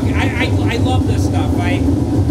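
A man talking, with a steady low rumble underneath.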